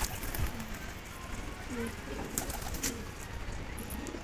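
A flock of domestic pigeons cooing softly here and there, with a few faint clicks.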